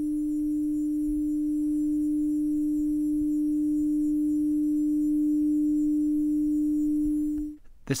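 The tuning fork movement of a 1972 Omega Constellation F300 watch humming with one steady, pure tone, the fork vibrating 300 times a second, picked up with the microphone against the open caseback. The hum cuts off suddenly near the end.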